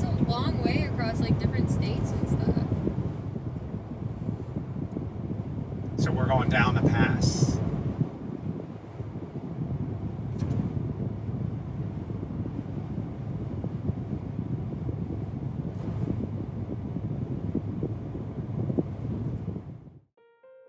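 Steady road and engine rumble inside a car's cabin at highway speed. Voices talk over it near the start and again about six seconds in, and the rumble goes on alone after that.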